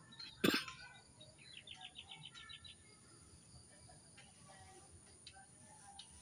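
Faint bird chirping outdoors: a quick run of about ten high chirps lasting about a second, preceded by a single sharp knock about half a second in.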